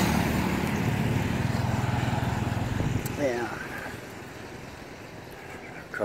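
A motor vehicle's engine running as it passes on the road, a steady hum that fades away about three to four seconds in.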